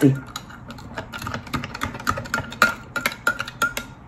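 Metal spoon clinking against a stemmed glass while stirring a thick, syrup-like thickened drink: rapid, irregular ticks, many with a brief glassy ring.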